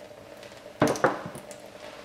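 Wet paintbrush worked against a wet bar of soap, with two quick knocks close together about a second in.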